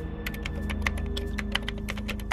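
Keyboard typing sound effect: rapid, irregular clicks, several a second, over a low, sustained music drone.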